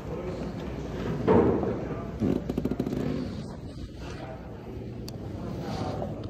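A church congregation getting to its feet: shuffling, clothing and a few knocks and thumps from the wooden pews and kneelers, with indistinct murmured voices in a large room. The loudest knock comes about a second in, and a cluster of clicks and knocks follows about two seconds in.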